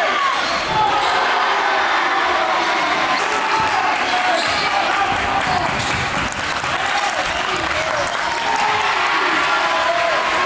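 A basketball dribbled on a hardwood gym floor, heard against a steady background of many crowd voices echoing in the gym.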